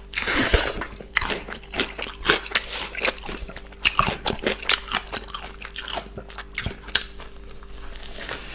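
Close-miked chewing of a breaded chicken burger: irregular crunches and wet mouth clicks as the crispy coating and bun are chewed.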